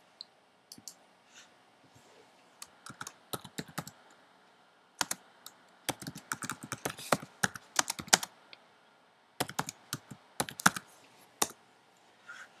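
Computer keyboard typing: a few single clicks early on, then irregular runs of key clicks, quickest and densest in the middle, stopping shortly before the end.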